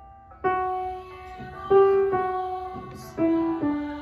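Grand piano playing the alto line of a slow hymn anthem. A single melody note stands out over quieter chords. The notes are struck firmly about half a second in, again near the middle and again near the end, each one left to ring and fade.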